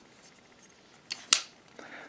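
Two sharp metallic clicks, about a quarter of a second apart, from a CRKT XOC folding knife being handled; the second click is the louder.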